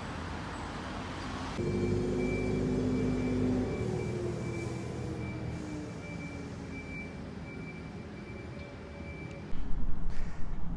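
Outdoor road traffic noise. From about one and a half seconds in, a vehicle engine hum rises over it and slowly falls in pitch as it passes, fading out before speech begins.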